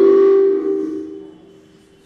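Loud microphone feedback through the hall's PA: a knock on the desk microphone, then a ringing howl of several held tones that fades out after about a second and a half.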